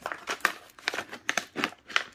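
Crinkling and rustling of a tool-kit pouch being opened and handled as its contents are pulled out, in a quick, irregular run of crackles.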